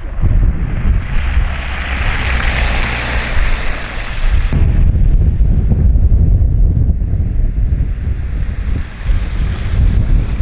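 Strong blizzard wind buffeting the microphone with a heavy low rumble, and a louder hissing gust for a few seconds starting about a second in.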